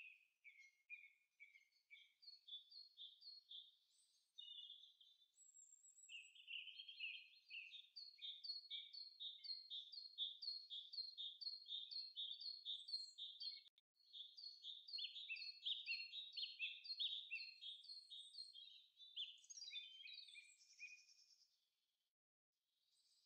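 Faint birdsong: long runs of short, high notes repeated a couple of times a second, with brief breaks between runs.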